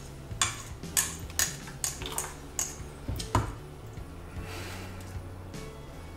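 Metal spoon stirring in a saucepan, with a string of sharp clinks against the pot over the first three and a half seconds, then quieter, over a steady low hum.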